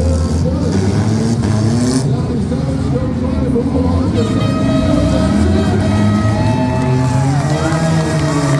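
Several demolition derby cars' engines running and revving as they push against each other, mixed with music and voices over the arena.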